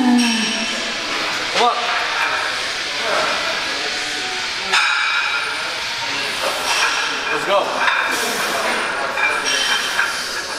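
A lifter's short grunts and breaths under a heavily loaded barbell in a squat rack, with metal clinks from the bar and plates and a sharp clank about five seconds in, over steady gym noise.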